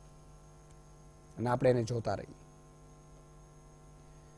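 Steady electrical mains hum on the studio audio line, a low buzz with several evenly spaced tones. A man's voice speaks one short phrase about a second and a half in.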